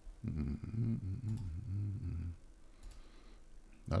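A man humming low and wordlessly for about two seconds, with the pitch wavering a little. A short spoken word follows at the very end.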